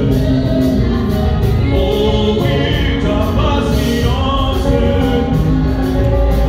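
Gospel worship music: voices singing a song together over instrumental accompaniment with a steady beat.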